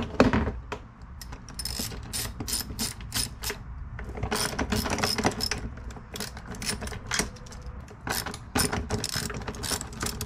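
Hand ratchet clicking in quick runs as the mounting nuts of worn swivel casters on a plastic cart are loosened, with a sharp knock right at the start.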